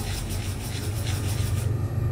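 Pencil drawing on sketchpad paper: a quick run of light scratchy strokes as a small circle is sketched, stopping about one and a half seconds in, over a steady low rumble.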